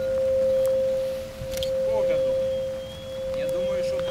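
A steady ringing tone at one pitch that swells and fades about three times, joined about halfway by a thinner, higher tone, with faint voices beneath.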